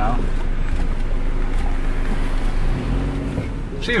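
Steady low rumble of road and engine noise heard from inside a car as it drives.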